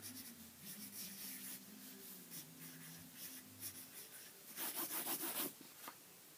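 Pencil drawing on paper in short, faint scratchy strokes, growing louder and denser for about a second near the end.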